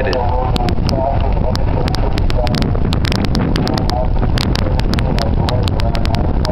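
Heavy rain and wind rumbling on the microphone, with frequent sharp clicks, while a distant outdoor public-address voice broadcasts a tornado warning in fragments.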